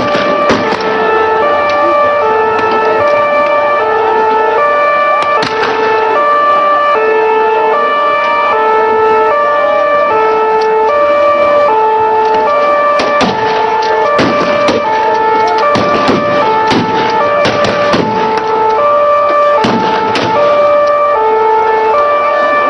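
A two-tone siren switching between a high and a low note about every two-thirds of a second, over a dense background of noise. Sharp bangs and cracks cut through it, a few early and many in quick succession in the second half.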